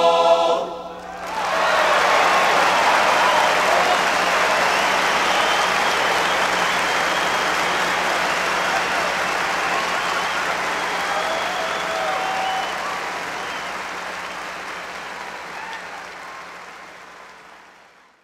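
A men's barbershop chorus's final held chord cuts off under a second in, then a large audience applauds with some cheering. The applause fades out over the last few seconds.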